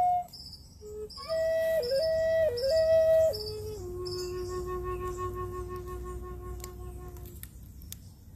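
Native American-style flute built into a coffee-wood walking stick, keyed in F#, played solo: a short phrase of notes that steps down to a long, softer low note held for about three and a half seconds, stopping shortly before the end.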